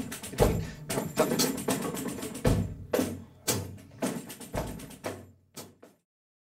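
Drum kit playing a rhythmic phrase: sharp strikes, several with a heavy bass drum thump, among lighter strokes. The playing grows fainter toward the end and cuts off at the very end.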